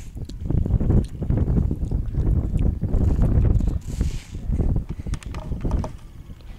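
Wind buffeting the camera microphone in uneven low rumbles, with a few light handling knocks as the camera is turned, and a short hiss about four seconds in.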